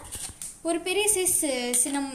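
A woman speaking.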